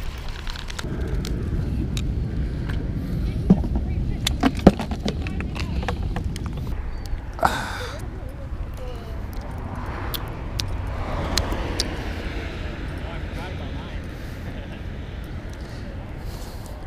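Low, steady rumble of passing road traffic, with a few sharp clicks, the loudest about three and a half and four and a half seconds in, and a short hiss about seven and a half seconds in.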